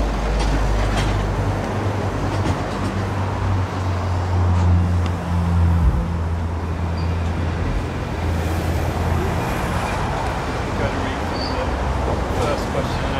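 Road traffic passing close by: a low, steady engine rumble from a heavy vehicle that shifts in pitch about halfway through and fades near the end, over a constant hiss of traffic noise.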